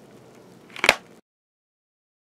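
Faint room noise, then a single sharp click a little under a second in, after which the sound cuts off to dead silence.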